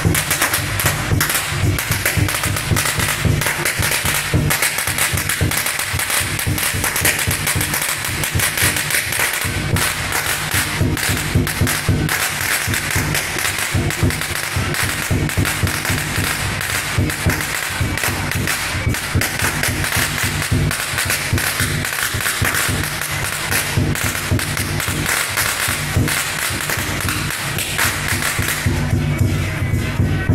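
A long string of firecrackers crackling in a fast, continuous rattle, with procession music underneath that is clearest near the start and end.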